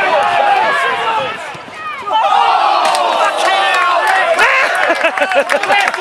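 Football crowd on the terraces shouting and yelling, many voices at once. There is a brief lull about two seconds in, then the shouting picks up again.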